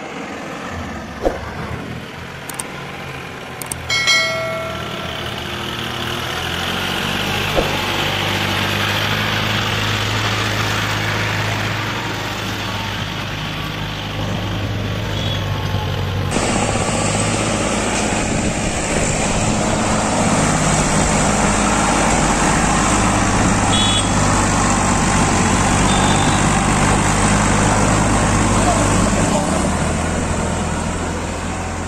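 Farm tractor's diesel engine running steadily under load while hauling a loaded trolley through mud. The engine sound changes abruptly about halfway through.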